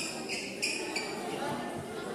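Sneakers squeaking on a hard court floor as badminton players move, about four short, high squeaks within the first second, over background chatter.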